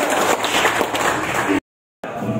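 A small crowd applauding, many hands clapping together, which cuts off abruptly into silence near the end.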